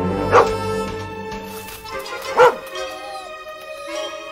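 A dog barks twice, short sharp barks about two seconds apart, over steady background music.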